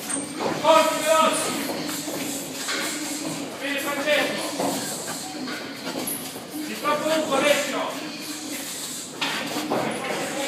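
Voices calling out in a reverberant gym, over the shuffling footsteps of boxers shadowboxing on a tiled floor.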